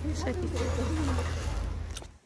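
Outdoor street ambience picked up by a moving phone: a steady low rumble with indistinct, murmuring voices of passers-by.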